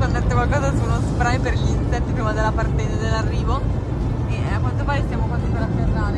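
Steady low rumble of airliner cabin noise, with a voice talking over it.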